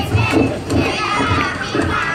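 Many young children's voices at once, high and overlapping, with a low thump recurring about twice a second underneath.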